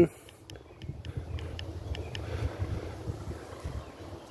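Wind rumbling on the microphone outdoors, low and steady, with a few faint short clicks in the first two seconds.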